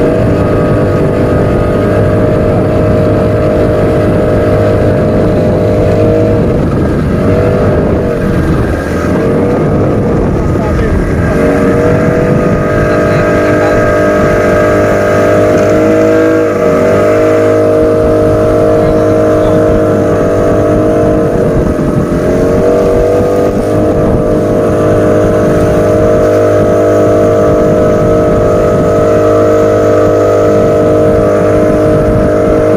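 Motorboat engine running at speed across open water, a steady drone that dips briefly in pitch three times as the throttle eases and picks up again.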